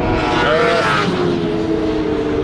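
Engine of a vehicle running on the race circuit, passing by, its pitch rising about half a second in.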